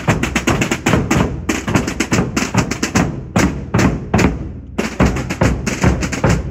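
A marching drum group: large rope-tensioned drums beaten with mallets and snare drums played with sticks, beating a fast, dense marching rhythm. The beating thins to a short lull about four seconds in, then picks up again.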